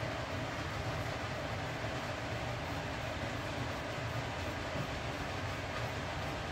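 Steady low rumbling background noise with a faint hiss, unchanging, with no distinct strokes or knocks.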